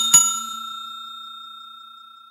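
Bell 'ding' sound effect of a subscribe animation's notification-bell tap: struck twice in quick succession, then one clear ringing tone slowly fading away.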